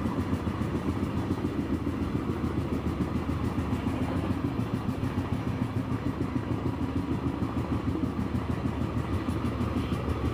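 Steady rumble of a moving vehicle heard from on board, with a fast, even flutter in its loudness.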